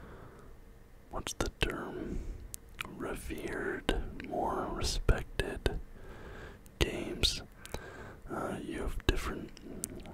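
A man whispering close to the microphone, with a few sharp clicks between phrases.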